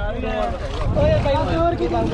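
People talking, several voices overlapping, with wind rumbling on the microphone.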